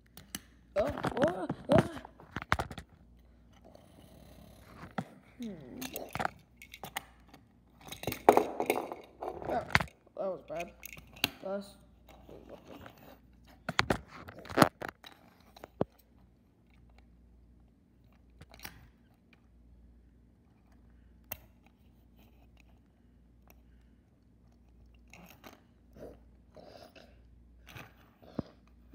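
Wordless vocal sound effects in short bursts, mixed with the clacks, knocks and scrapes of small toy cars being pushed and bumped together on a hard surface; the vocal noises cluster in the first half, after which there are mostly scattered single knocks.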